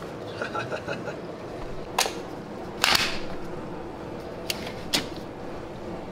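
A few sharp clicks and knocks from a Nespresso capsule coffee machine and a ceramic mug being handled on a countertop: one click about two seconds in, another with a short scrape near three seconds, and two more near five seconds.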